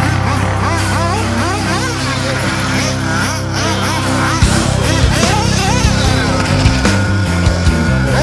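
Rock music playing over the engines of RC off-road buggies, which rev up and down repeatedly as the cars race.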